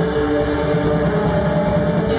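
Live rock band playing a loud, held, droning chord on electric guitars with drums, with no singing.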